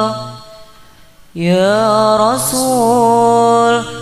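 Sholawat sung in an ornamented Arabic style: a held note fades away, and after a short pause a new phrase begins about a second and a half in, its pitch bending and turning.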